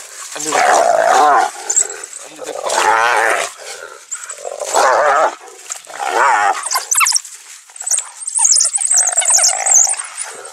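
A cornered hyena giving four loud, quivering, giggle-like calls, the whooping laugh of a hyena under attack. Near the end a run of high-pitched twittering follows, typical of African wild dogs mobbing it.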